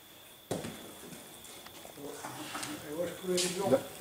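A bocce ball released onto a synthetic court lands with a sudden thud about half a second in, then rolls on with a faint rushing noise. People talk quietly over it in the last two seconds.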